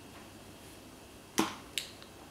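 A makeup compact clicking shut: two sharp clicks about a third of a second apart, the first the louder, a little over halfway through.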